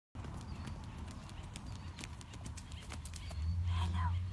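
Quick, irregular hoofbeats of a young Highland calf running over dirt and grass toward the microphone, over a low rumble that grows louder near the end.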